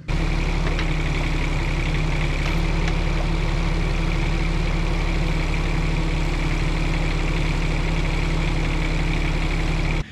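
Bobcat E10 mini excavator's diesel engine running steadily while the hydraulic boom offset is worked, with a thin steady whine over the engine note. The sound cuts in suddenly at the start.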